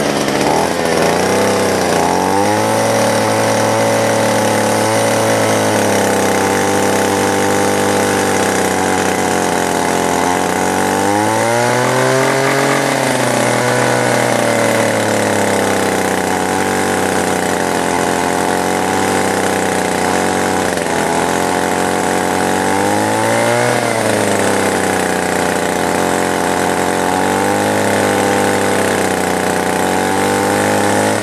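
Small two-stroke engine of a homemade 12 V generator running under charging load, directly coupled to an alternator. Its speed wavers and rises and falls several times, most clearly about twelve seconds in and again past the twenty-second mark, showing the very unstable RPM.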